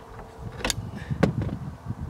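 Two sharp clicks a little over half a second apart, amid low rustling handling noise, as a screwdriver works at the dome-light mount on the cab ceiling.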